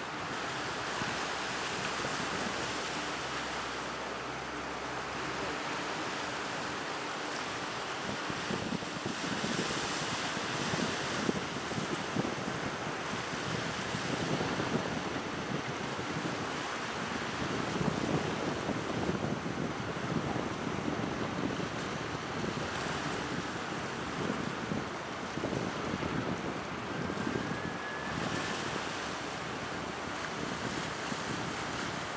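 Wind gusting across the microphone over the steady wash of sea water, with uneven low rumbles as the gusts strengthen partway through.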